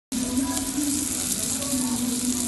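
Ribeye steak sizzling on a hot cast-iron sizzler plate: a steady hiss of fat and juices with small crackling pops.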